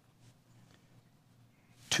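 Near silence: faint room tone with a low hum during a pause in a man's speech, which picks up again with a single word near the end.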